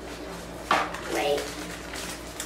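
Paper wrapping and a cardboard takeout box being handled, with a sharp rustle under a second in.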